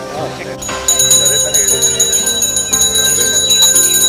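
A bell rung rapidly and without pause, starting sharply about a second in and loud above music and voices.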